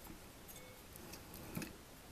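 Faint, irregular clicks and ticks from a Simpson planetary gear set turned by hand, its gears meshing as it drives the output shaft in reverse.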